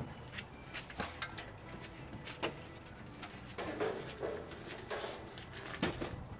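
Irregular footsteps and handling knocks of someone walking on concrete with the camera in hand, with a faint pitched sound briefly near the middle.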